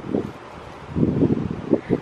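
Wind buffeting the microphone in low rumbling gusts, a short one at the start and a longer one about a second in.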